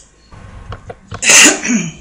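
A single loud sneeze about halfway through: a sharp burst of breath, then a short voiced tail that falls in pitch. A few faint clicks come before it.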